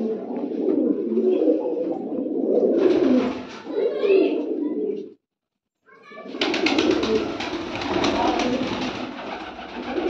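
A flock of domestic pigeons cooing together, a continuous low murmur of overlapping calls. The sound cuts out completely for about half a second just after the middle, then resumes with crackly noise over the cooing.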